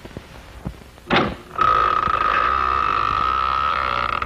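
A quiet opening with a short sharp burst of sound just after a second in, then a single high, steady tone from a horror trailer's soundtrack that starts about one and a half seconds in and holds.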